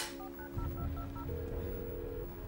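Phone keypad tones: a quick run of about seven short two-note beeps as a number is dialled, then one steady tone as the call rings through. A sharp click comes right at the start.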